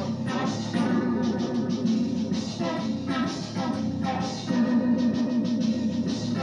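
Electric guitar jam: chords played in a steady rhythm over sustained low notes.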